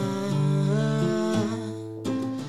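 A man's voice carrying a wordless, hummed melody over an acoustic guitar's ringing chords, in held notes that fade near the end.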